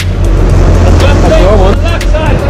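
A sport-fishing boat's engine and rushing wake, a loud, steady low rumble with wind-like hiss. From about a second in, a wavering, voice-like call rises and falls over it.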